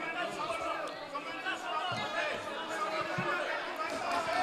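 Many people talking at once: a faint, overlapping chatter of voices among lawmakers on the chamber floor, with no single voice standing out.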